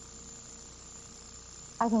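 A pause in a woman's speech filled by faint, steady background hiss and hum with a thin high-pitched whine. Her voice comes back near the end.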